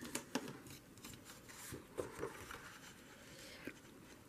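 Small craft scissors snipping through a sheet of scrapbook paper in a few faint, scattered cuts, with light paper handling.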